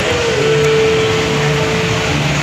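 Steady mechanical-sounding noise with a low hum, joined about a third of a second in by a single steady mid-pitched tone that holds to the end.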